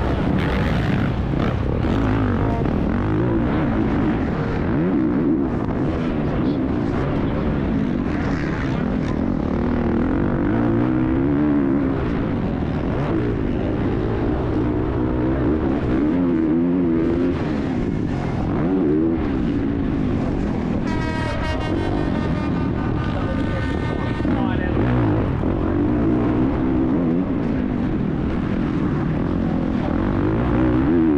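Factory Honda 450cc four-stroke motocross bike heard from the rider's helmet camera, its engine revving up and down continually as the throttle opens and closes through the track's corners and jumps. Heavy wind noise runs under it, and a brief high, steady engine-like tone joins in about two-thirds of the way through.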